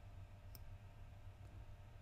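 Near silence: room tone with a low hum, and one faint computer mouse click about half a second in.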